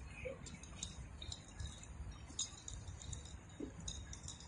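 Faint, irregular light clicks and clinks of a nunchaku's chain and sticks as it is swung slowly and switched from hand to hand, over a low steady rumble.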